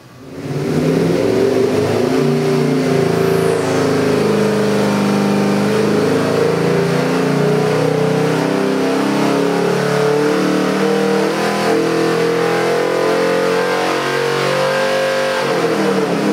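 Ford 347 cubic-inch stroker small-block V8 with Holley Sniper fuel injection running under load on an engine dynamometer in a sweep pull, revs climbing slowly from under 4,000 to nearly 5,000 rpm. It comes in loud about half a second in and holds a steady note.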